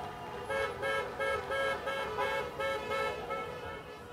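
Car horn honking in a quick, rhythmic run of short beeps on one pitch, in a slow-moving convoy of cars.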